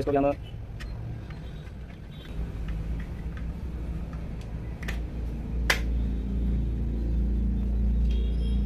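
Plastic toy-house parts being handled and pressed together, with a few sharp clicks, the loudest about five and six seconds in. Under them a low steady rumble builds from about two seconds in.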